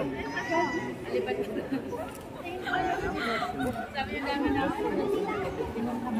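Several people talking at once, indistinct conversational chatter in a large reverberant room.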